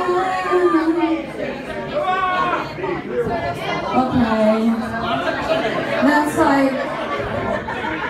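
A woman singing into a microphone through a bar's PA, holding some notes long, with people talking underneath. The backing music is barely heard, from a fault in the sound system.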